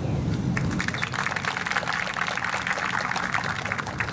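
Audience applauding, the clapping coming in about a second in and going on steadily.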